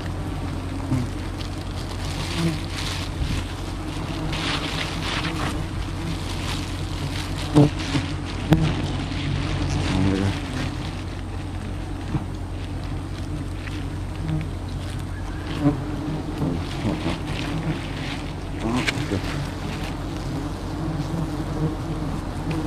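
A swarm of wild honeybees buzzing around a freshly cut honeycomb: a steady droning hum, broken by a few sharp clicks about eight seconds in and again later.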